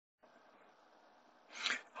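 Faint microphone hiss, then near the end a man's short, sharp intake of breath just before he starts speaking.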